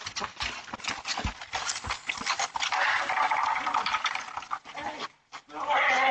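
A man running on a concrete driveway, with sharp footfalls in the first two seconds, followed by shouting near the end, heard through a doorbell camera's microphone.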